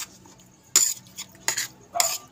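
A metal spoon clinking and scraping against a plate: three short, sharp clinks, one about a second in, one midway through and one at the end.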